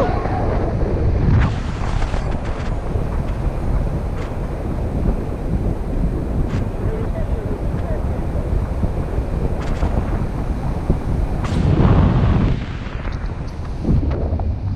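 Wind buffeting the camera's microphone in paraglider flight: a loud, continuous rush with a heavy low rumble, broken by a few brief clicks.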